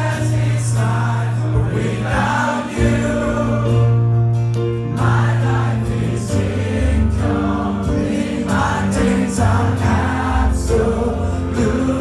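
Live acoustic band music: strummed acoustic guitar and keyboard under a steady, slowly changing bass line, with a male lead vocal and several voices singing along.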